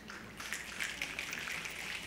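Faint theatre audience noise: low rustling with a few small clicks.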